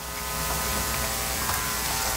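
Steady electrical buzz with a low hum through the venue's sound system as video playback is switched in.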